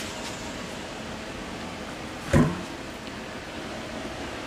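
Steady low background hum, with one short, louder sound a little past halfway through.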